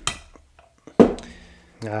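Two sharp clinks of a metal tool against a glass jar of paint stripper, the second, about a second in, louder and briefly ringing.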